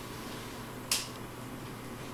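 A single short, sharp click about a second in, over faint room hiss.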